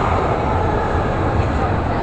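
Steady low rumble and running noise of a turning carousel, heard from aboard the ride.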